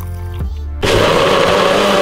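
NutriBullet personal blender switching on about a second in and running steadily at full speed, blending fruit, greens and water. Background music with a steady bass plays under it.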